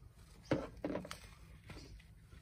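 Pointy-nose pliers set down on a hard plastic toolbox lid: two short knocks close together about half a second in.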